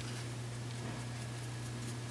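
Steady low hum of room tone, unchanging throughout.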